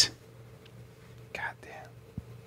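Near-quiet room tone with a faint steady hum, broken about a second and a half in by a brief faint whisper.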